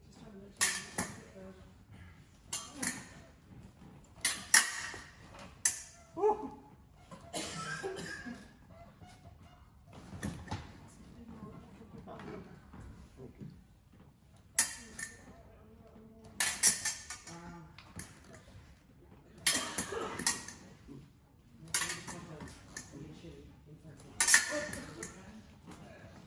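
Steel épée blades clashing and scraping against each other in irregular runs of sharp metallic clinks. There is a quieter stretch in the middle, and then the clinks start again.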